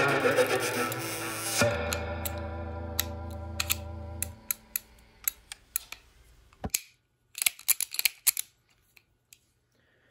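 Distorted electric-guitar music ends on a held chord that fades out about four seconds in. Then a series of short metallic clicks and taps, with a tight cluster near the end, as a single-action revolver is handled.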